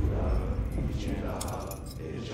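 A small metal ring on a cord jingling and clinking as it is lifted, with brief light clinks about a second and a half in. Under it a deep low rumble slowly fades.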